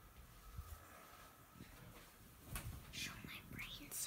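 A person whispering, faint and breathy, starting a little past halfway over quiet room tone.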